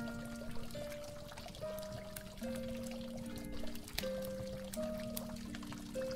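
Slow, mellow instrumental music of held notes that change about once a second, over water pouring and trickling, with scattered drips and small splashes.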